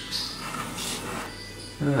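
Notched steel trowel scraping across mastic on a drywall backsplash in a few short strokes, as the adhesive is combed into ridges; a voice comes in near the end.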